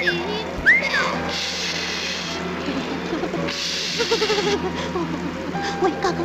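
Cartoon soundtrack: music with a repeated arching whistle-like tone in the first second, two hissing bursts, and a quick quavering, bleat-like sob about four seconds in as a toy character cries.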